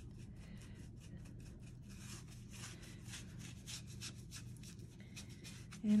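Faint, scratchy rubbing of a one-inch flat paintbrush dragging chalk paint across a painted pumpkin cutout, in many short repeated strokes.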